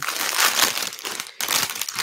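Plastic LEGO polybag crinkling as it is gripped and pulled open by hand, in two spells with a brief break about a second and a half in.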